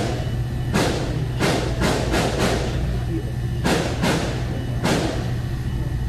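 Gunfire from an assault-style rifle inside a store, heard through a phone's microphone from the floor: about seven loud shots in irregular clusters, each with a ringing echo. There is a single shot about a second in, a quick run of four around two seconds, then two more spaced shots. A steady low hum runs underneath.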